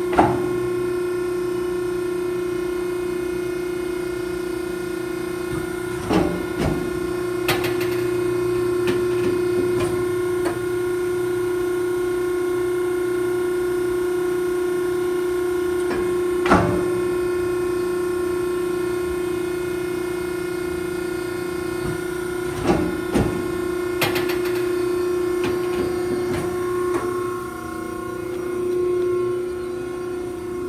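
The hydraulic pump of a Betenbender hydraulic squaring shear runs with a steady hum while the shear is cycled. A few sharp metallic clunks come from the machine: one right at the start, then at about 6, 16 and 23 seconds.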